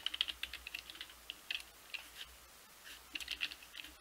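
Typing on a computer keyboard: short runs of keystrokes with brief pauses between them.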